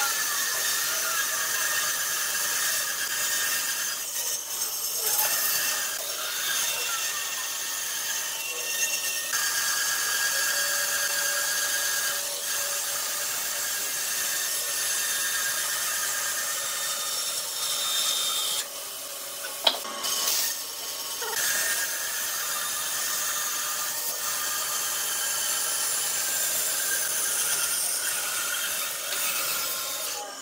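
Bandsaw cutting a thick wooden blank along a curve: a steady sawing noise with a thin high whine from the running blade, easing briefly a few times as the work is turned. A single sharp click sounds about two-thirds of the way through.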